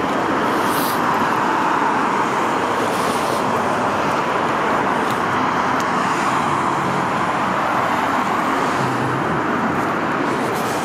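Steady, unbroken freeway traffic noise, a continuous rush of many vehicles with no single car standing out.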